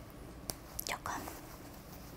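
Quiet handling sounds while buttons on a men's áo dài are being fastened: a light click about half a second in, then a short whispered breath about a second in.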